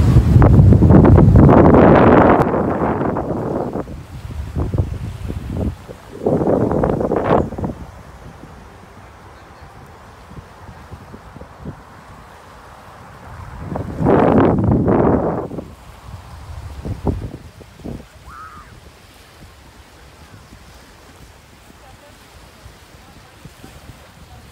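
Wind gusting across the microphone in three loud rumbling bursts, with a quieter steady hiss of wind and small waves on the shore between them.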